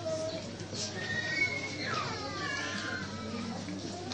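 A person's high, wavering cry that starts about a second in and slides down in pitch near the middle, over a steady background murmur.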